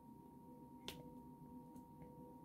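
Faint, sharp clicks of a diamond painting drill pen tapping resin drills into place on the canvas: one clear click about a second in and a fainter one near the end, over near-silent room tone with a faint steady hum.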